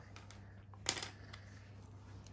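Small plastic LEGO pieces clicking as they are handled and knocked against each other and the wooden table, with one sharper clatter about a second in.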